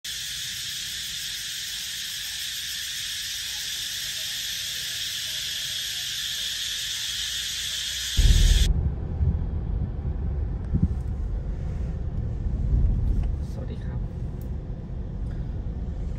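A steady, high-pitched insect drone among trees. About eight seconds in it cuts to the low rumble of road and engine noise inside a moving Isuzu's cabin, starting with a brief loud burst.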